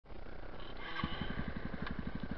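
Dirt bike engine idling with an even, rapid beat that becomes clearer about a second in.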